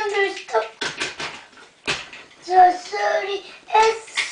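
A child's high voice vocalizing in short, broken phrases, half speaking and half singing, with a few sharp clicks in between.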